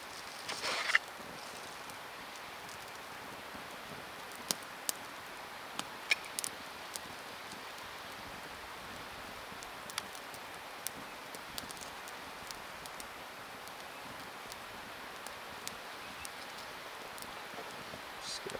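Small campfire of twigs and dry sage crackling, with scattered sharp pops over a steady soft hiss. A short rustle comes about a second in.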